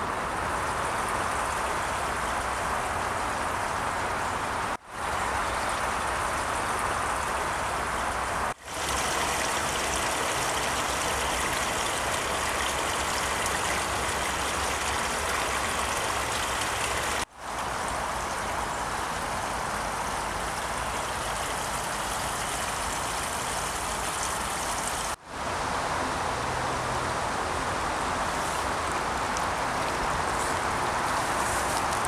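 A small stream's water running over stones and snagged branches, a steady rushing. It is broken by four brief, sudden gaps.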